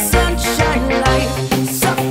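Upbeat pop song playing an instrumental passage with no vocals: a full backing track with bass and a steady beat.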